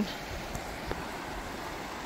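Steady rushing of a fast, shallow river running over riffles.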